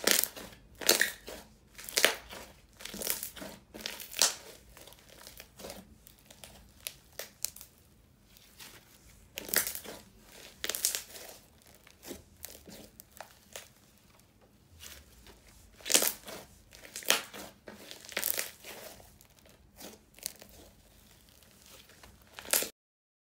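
Neon green snow fizz slime, a crunchy slime, being squeezed, stretched and pressed by hand, crackling and crunching in irregular bursts with short lulls between.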